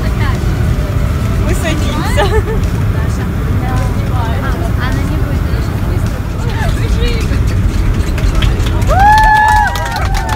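Steady low rumble of an airliner cabin, with passengers chattering quietly. A woman's voice rings out loud and high near the end.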